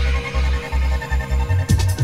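Jungle/breakbeat hardcore track: a deep sub-bass pulses in short, evenly repeating blocks under sustained synth tones, and a fast breakbeat's drums come in near the end.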